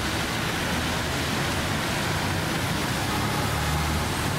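Steady city traffic and road noise with a low engine rumble, heard from a moving vehicle, with tyres hissing on wet pavement.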